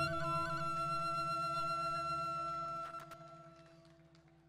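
Balinese gamelan's last struck notes ringing out: bronze metallophones and gong hold several steady tones with a slow pulsing waver, then die away from about three seconds in as the piece ends.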